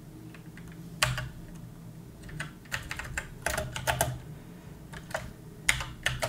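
Typing on a computer keyboard: scattered keystrokes, single and in short runs, with pauses between.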